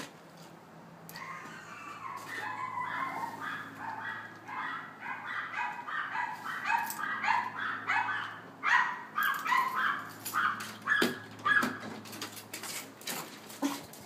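Small dogs, including a Morkie (Maltese–Yorkshire terrier mix), barking rapidly and repeatedly at the ring of the front doorbell, about two to three barks a second. The barking grows louder from about nine seconds in. It is a fit of excited doorbell barking at a visitor.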